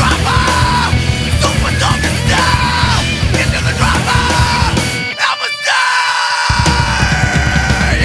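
Loud, distorted 1990s indie rock band music with shouted vocals. About five seconds in, the bass and drums drop out for a moment, then the full band comes back in.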